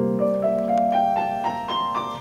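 Grand piano playing the closing postlude of a classical art song alone after the voice has stopped: a line of single notes climbing step by step over held lower chords.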